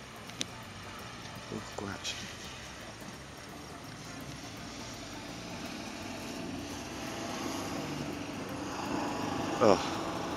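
Steady engine drone slowly growing louder, with a few faint clicks in the first two seconds and a short shout of 'oh' near the end.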